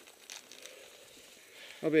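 Faint rustling and crackling of dry leaves on a forest floor, then a man's voice calling out near the end.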